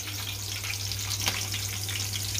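Green chillies and sliced onion sizzling in hot oil in a frying pan, a steady frying hiss over a low steady hum.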